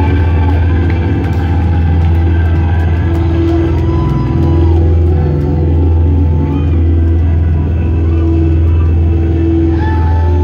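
Loud live electric guitar and bass droning through amplifiers, a low sustained rumble with held distorted notes and a few wavering high tones above it, with no drumbeat.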